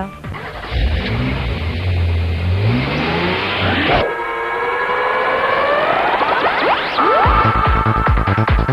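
Electronic transition music. A low synth drone swells with a rising sweep and cuts off abruptly about four seconds in. Swooping synth tones then climb in pitch, and a pounding electronic dance beat kicks in near the end.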